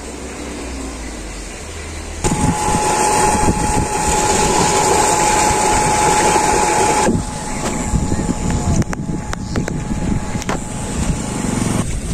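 Water gushing from an irrigation pump's outlet pipe into a concrete channel, with the pump's steady tone running under it. The sound starts abruptly about two seconds in and drops in level about seven seconds in.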